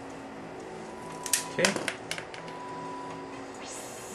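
A few sharp clicks and taps from a pen and a paper card being handled on a wooden desk, bunched about a second and a half in, then a short papery rustle near the end as the card is picked up, over a low steady hum.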